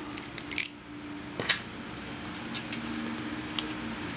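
A few scattered small clicks and ticks as the plastic screw cap is worked off a glass sample vial and a reagent packet is handled, the sharpest about half a second in and again about a second and a half in. A faint steady hum runs underneath.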